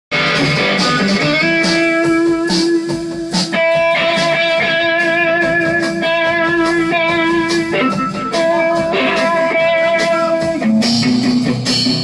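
Live rock band playing an instrumental passage: electric guitar holding long sustained notes over a drum kit and bass, the guitar changing note every few seconds.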